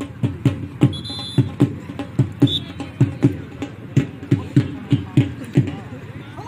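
A dhol drum beating a fast, uneven rhythm of loud, booming strokes, about three a second.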